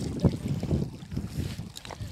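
Wind buffeting the microphone by the water's edge, with lake water lapping at a rocky shore; one louder gust about a quarter of a second in.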